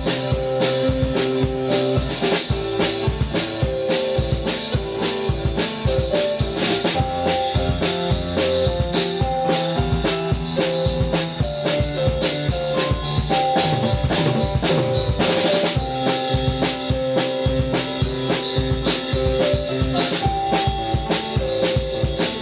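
Electronic keyboard and drum kit playing together in a live jam: keyboard chords and melody over a steady beat of bass drum, snare and cymbals.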